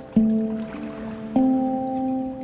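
Handpan being played: three struck notes, the strongest just after the start and about two-thirds of the way through, a softer one in between, each ringing on and overlapping the last.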